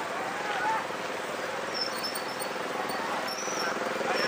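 Outdoor street ambience: a steady wash of traffic noise with the voices of people passing by, and a few faint high chirps in the second half.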